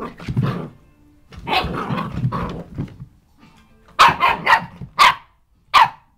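Puppy growling in two drawn-out stretches, then five sharp, high barks in quick succession in the last two seconds.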